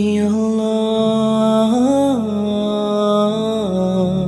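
Background song: a singer holds one long sung note on the word "I", its pitch rising briefly about halfway through and falling back, over a soft sustained accompaniment.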